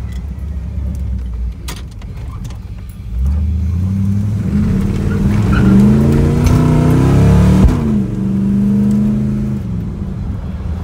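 Older Ford car's engine heard from inside the cabin, running steadily, then climbing in revs from about three seconds in as the car accelerates. Near eight seconds there is a click and the pitch drops quickly, then the engine holds steady.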